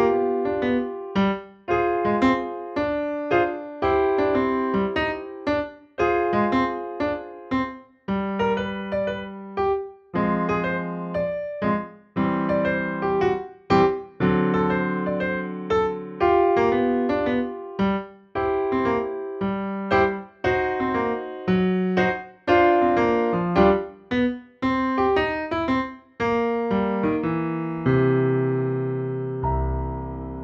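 Digital piano playing a jazzy piece with a swing feel, chords struck in a steady rhythm. Near the end, a final chord is held and dies away.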